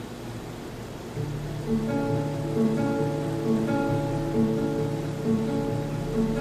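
Nylon-string classical guitar fingerpicked in an instrumental passage: soft for about the first second, then a bass line and picked higher notes come in and carry on in a steady rhythm.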